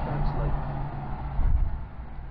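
Outdoor street background: a steady low hum with rumble, swelling louder about three-quarters of the way through, typical of road traffic.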